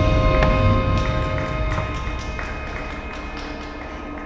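Percussion ensemble ringing out and fading away at the end of a phrase, with a few held tones dying off. Scattered light clicks from sticks and drums continue as it fades.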